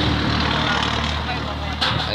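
A steady low motor hum, like an engine running, under background voices.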